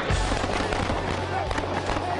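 A dense run of rapid crackling pops over a low, steady music drone, with faint voices underneath.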